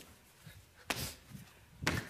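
Two thumps about a second apart: a person leaping like a frog, landing with hands and feet on a hard studio floor.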